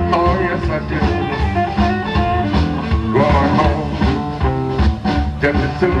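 Live electric blues band: an amplified harmonica, cupped against a microphone, plays over electric guitar, bass and drums with a steady beat. A sung line comes in at the very end.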